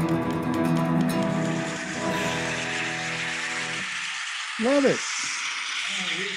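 An acoustic guitar and a woman's voice hold the final notes of a folk song, ringing and then dying away a little under four seconds in. A brief voice sound follows near the end, over a steady hiss.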